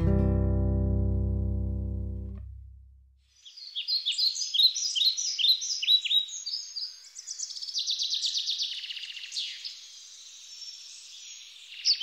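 Final chord of acoustic guitar and bass ringing out and fading away over about three seconds. Then songbirds chirping, in quick repeated high notes, to the end.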